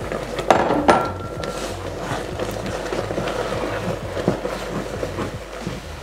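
A wooden spoon stirring flour into hot water and melted butter in a stainless steel pot as a choux paste (Brandteig) comes together. It knocks sharply against the pot twice near the start, then keeps up a steady, thick stirring and scraping with small knocks.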